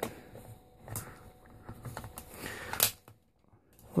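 Polymer airsoft magazine scraping and clicking faintly against the magazine well of a Tippmann M4 airsoft rifle as it is worked in and out, with a sharper click near the end. The magazine is hard to engage, which the owner puts down to a stiff magazine catch.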